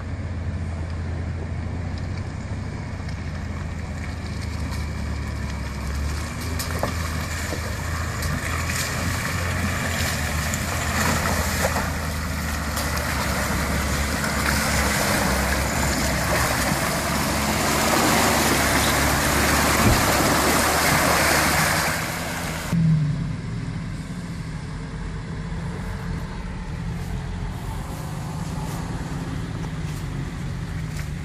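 Off-road vehicle engine running steadily at low revs while driving through deep, water-filled mud ruts. A rushing noise of wheels churning through mud and water builds through the middle and stops abruptly about two thirds of the way through, followed by a single short thump.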